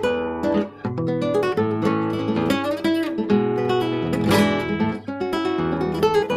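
Classical guitar played fingerstyle: a continuous run of plucked notes over ringing bass notes, several strings sounding at once.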